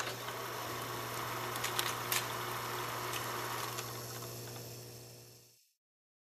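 Faint old-film sound effect: a steady low hum with a soft hiss and a few crackles about two seconds in, fading out near five seconds.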